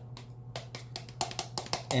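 A metal spoon scooping thick sour cream from a plastic tub and knocking it off into a bowl: a quick, uneven run of light taps and clicks.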